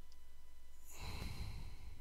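A person exhaling in a sigh close to the microphone, about a second long, starting about halfway through, over a faint steady electrical hum.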